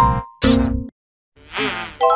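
Heavily effects-distorted intro jingle: chopped bursts of a sung voice with held tones, broken by about half a second of silence near the middle, then a voice-like sound swelling up again near the end.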